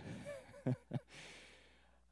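A man's short, soft laugh into a handheld microphone: a few quiet breathy chuckles, then a longer exhale that fades away.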